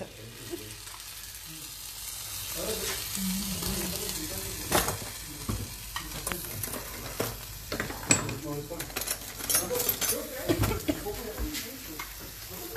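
A spoon spreading tomato sauce over pizza dough on a hot stovetop griddle: soft scraping with scattered clicks and taps of the spoon on the dough and against the sauce bowl, over a faint steady sizzle.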